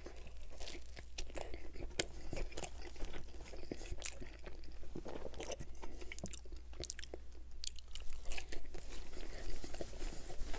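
Close-miked chewing of pizza, with the crust crunching in many short crackles throughout as a bite is chewed.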